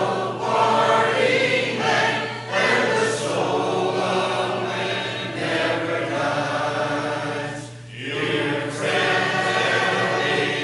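Church congregation singing a hymn together, unaccompanied in the a cappella tradition of the Churches of Christ, in several voice parts, with a brief drop for breath between lines just before the eighth second.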